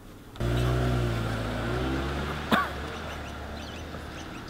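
A Mazda car's engine starts about half a second in, then pulls away and fades as it drives off. A brief sharp sound with a falling pitch comes about two and a half seconds in.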